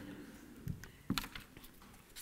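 A handful of light clicks from laptop keys being pressed, bunched together about a second in.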